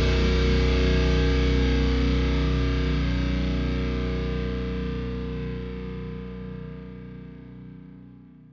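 The final distorted electric-guitar chord of a heavy metal song, with bass underneath, ringing out and slowly fading away.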